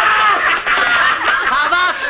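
Several people laughing loudly together, their voices overlapping in long, excited peals.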